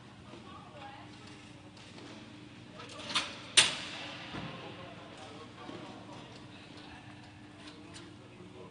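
Two sharp knocks about half a second apart a little over three seconds in, the second louder and echoing around the rink, over a low steady hum.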